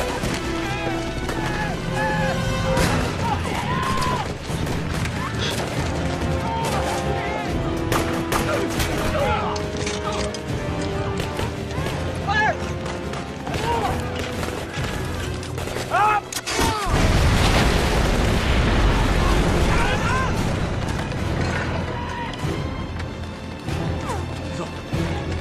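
Movie battle soundtrack: rapid rifle and machine-gun fire with men shouting over a music score, then a large explosion about 17 s in that rumbles on for several seconds.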